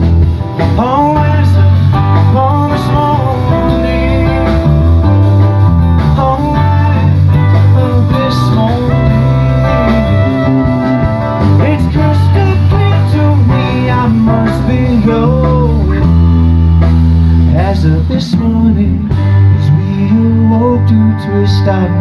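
Live band playing an instrumental break: a saxophone solo with bending, sliding phrases over acoustic guitar and electric bass.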